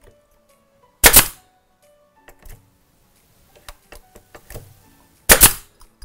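Pneumatic nail gun firing two nails into timber cladding on a wooden frame, two sharp shots about four seconds apart, with light handling clicks between them.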